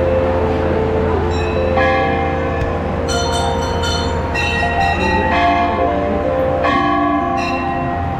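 Temple bells ringing over and over, several tones overlapping and dying away, over a steady low hum.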